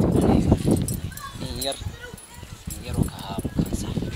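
A goat bleating once with a wavering pitch, about a second in, with men's talk around it.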